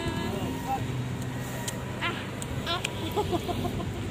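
Outdoor background noise with brief snatches of voices. A low steady hum runs through the middle.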